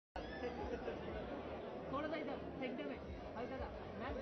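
Many people talking at once, an overlapping chatter of voices, with a man saying 'bas bas' ('enough, enough') near the end.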